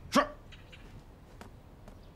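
A man's voice gives one short spoken reply, '是' ('yes'), just after the start, rising slightly in pitch. Then quiet room tone with a few faint clicks.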